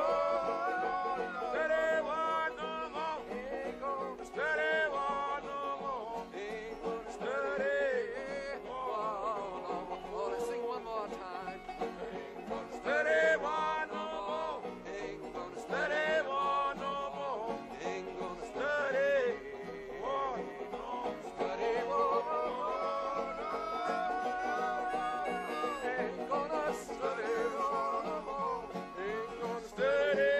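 Country blues played on harmonica and acoustic guitar, the harmonica carrying the melody in phrases of bent, sliding notes over the guitar's steady accompaniment.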